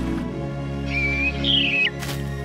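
Gentle orchestral score with a bird's chirping over it: a short whistled note about a second in, then a falling warbled trill that ends in a quick downward slide. A sharp click comes right at the end.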